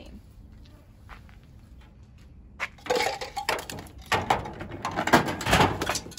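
A homemade Rube Goldberg machine running: a string of clattering knocks and rattles as its parts tip, roll and strike one another, starting a little under three seconds in and growing busier and louder toward the end.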